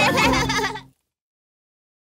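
A short wavering, bleat-like vocal giggle over the last notes of the closing theme music, cut off suddenly about a second in.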